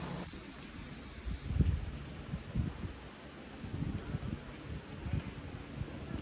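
Wind buffeting the microphone in irregular low gusts, the strongest about a second and a half in.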